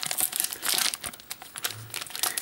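Plastic snack-bar wrapper crinkling and crackling as it is peeled open by hand, busiest in the first second and thinner after.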